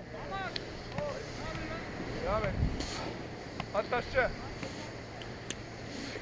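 Short, faint shouts from players across the court, several times, over a steady wind noise on the microphone.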